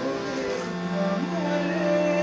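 Harmonium playing sustained reed chords while a man sings a slow, ornamented Assamese melody over it; a low held note enters about half a second in.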